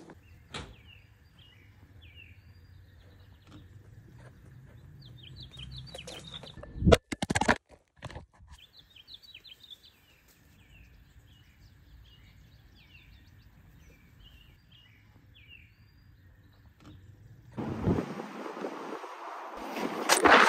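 Small birds chirping repeatedly. A couple of loud knocks come about seven seconds in, and near the end wind rushes on the microphone.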